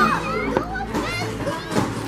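Several children talking and chattering at once, with music playing underneath.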